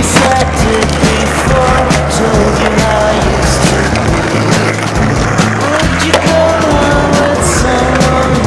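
Music playing loudly, with skateboard sounds on concrete mixed in: wheels rolling and the clacks of the board.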